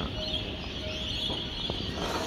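Birds chirping in the background, a steady high twittering with no loud call standing out.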